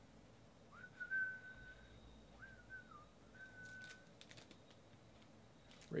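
A person whistling softly: a held high note, then two short dipping notes, then another held note, over about three seconds.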